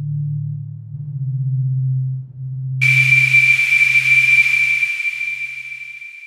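UVI Falcon 3 "Distant Memory" ambient synth preset played from a keyboard: deep held bass notes, then about three seconds in a high steady whistle-like tone over a hiss starts abruptly while the low notes die away, the high tone slowly fading.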